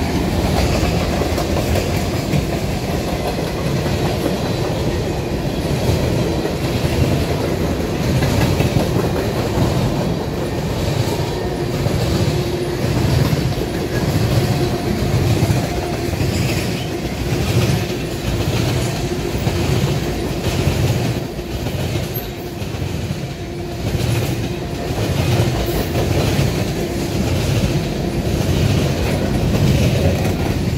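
Freight train of tank cars and covered hoppers rolling past close by. The wheels clack over the rail joints in a steady, repeating rhythm over a continuous rumble.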